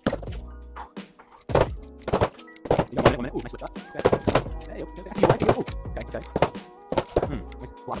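Gloved punches landing on an Everlast Powercore freestanding punching bag in irregular flurries, sometimes several hits a second, each one a dull thud. Background music plays throughout.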